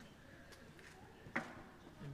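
Near silence: quiet room tone, broken once by a short spoken word about a second and a half in.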